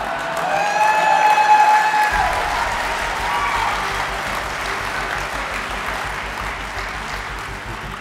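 Audience applauding, with one voice calling out in a long, drawn-out tone in the first two seconds; the applause peaks about a second and a half in and slowly fades.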